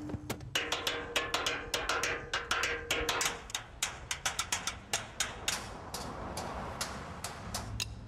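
Drumsticks striking found street objects, a metal roll-down shutter and a fire hydrant among them, in a quick, fairly even rhythm of sharp hits, about four or five a second.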